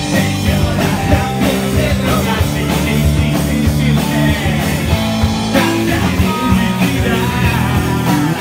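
Live rock band playing loudly: a singer's amplified vocals over electric guitars and drums.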